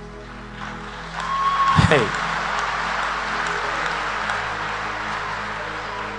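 Congregation applauding and cheering over soft background music with held tones, with a loud falling cry about two seconds in.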